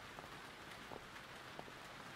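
Faint, steady rain ambience with a few light soft ticks.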